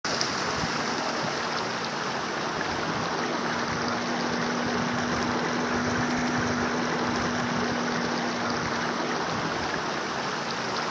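Water running steadily down a small rock waterfall into a stream. A faint steady hum joins it from about three to nine seconds in.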